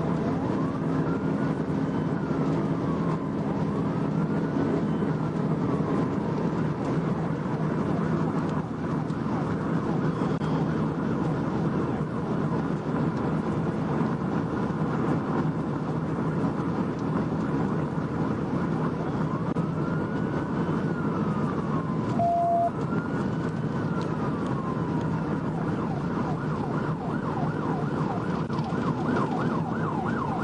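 Police siren heard from inside a cruiser at high speed: steady road and engine noise throughout, with the siren's wail rising and falling in slow sweeps, twice near the start and twice again about two-thirds through. A short beep sounds partway through, and the siren switches to a fast yelp near the end.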